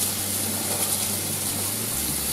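Cold tap water running steadily into a stainless-steel kitchen sink, splashing over duck legs in a metal colander as they are rinsed of their salt cure.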